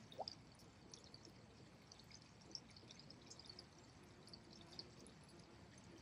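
Near silence: faint outdoor ambience with scattered soft, high ticks.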